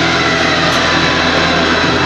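Loud, steady rushing drone with a low hum, like a jet-aircraft sound effect, with a tone sliding slowly downward during the first half.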